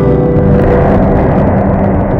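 Instrumental music in which a loud, rumbling wash of noise swells up over held tones.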